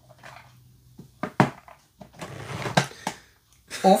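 Hands working a LEGO 9V train set's track power cable and its plastic parts: a few sharp plastic clicks about a second in, then a short scraping rush from about two to three seconds in. The cable has a small defect.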